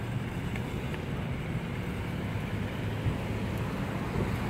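Steady low outdoor rumble of a parking lot: wind on the phone's microphone and distant traffic.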